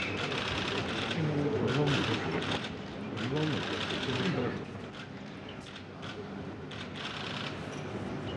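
Low murmur of voices with bursts of rapid mechanical clicking scattered through it.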